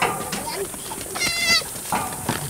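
A goat kid bleating once, a short wavering high call about a second in, after a sharp knock at the start.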